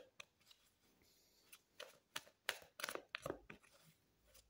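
Tarot cards being shuffled by hand: faint short snaps and rustles of card on card. They start about a second and a half in, after a near-silent pause.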